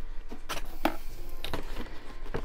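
A few light clicks and taps from a windowed cardboard display box being handled and turned in the hands.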